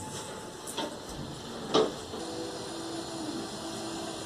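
Lift coming to a stop and its sliding doors opening: two short knocks, the louder about two seconds in, followed by a steady low hum.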